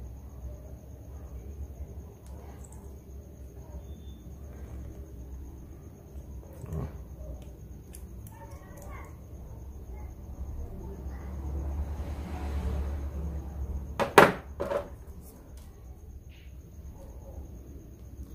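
Pliers bending thick electric-shower heating wire by hand: faint small clicks and scrapes of metal on metal, with a sharp double click about fourteen seconds in.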